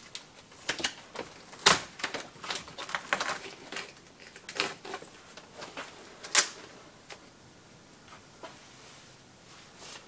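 Layered composite mould being pried and peeled off a car dashboard: irregular crackling clicks as it separates, with sharp cracks about 1.7 s and 6.4 s in, then only a few faint handling sounds.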